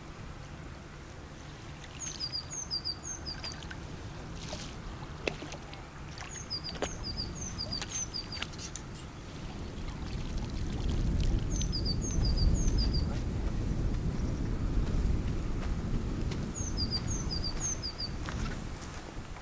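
A small songbird singing four times, each phrase three or four quick two-note chirps in a row. A low rumble, the loudest sound, builds from about ten seconds in and runs on under the last phrase.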